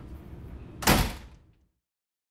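A door being shut with a single loud bang about a second in, the noise dying away over about half a second.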